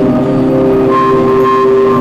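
High school marching band holding a long sustained chord from its wind section, with a higher note joining about a second in.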